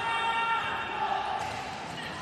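Indoor futsal match sound in a sports hall: a steady wash of court and hall noise with a held, faint tone that fades out over the first second and a half.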